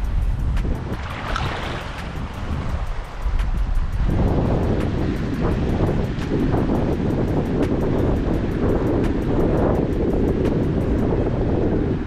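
Wind buffeting the microphone over small waves lapping and sloshing in shallow water, growing louder and fuller about four seconds in.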